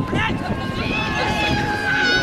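High-pitched shouting from people at the arena rail, held and gliding calls, over the dull thud of ponies galloping on sand.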